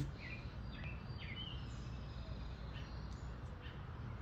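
Outdoor ambience with a few short bird chirps in the first second and a half, over a steady low background hum.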